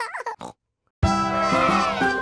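A cartoon pig character's short laughing vocalisation with oinks, lasting about half a second, then a brief silence. About a second in, the bright instrumental music of a children's song starts.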